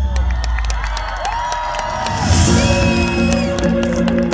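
Live pop concert music over a PA, recorded from the crowd, with audience cheering and whoops. The heavy bass falls away early on, and a held electronic chord comes in a little past halfway.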